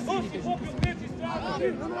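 Players' voices calling out across a football pitch during play, with one sharp kick of the ball a little under a second in.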